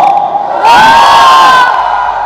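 Audience cheering and shouting at a live stage show, with a loud burst of voices from a little after half a second in that lasts about a second.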